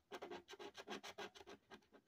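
Quick, faint strokes of a clear resin scratcher scraping the latex coating off a scratch-off lottery ticket, about six a second, thinning out near the end.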